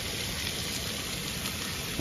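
Sliced potatoes and onions sizzling steadily in a perforated grill pan on a hot grill.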